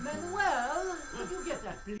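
A man's voice swooping widely up and down in pitch, in sing-song sounds that form no clear words.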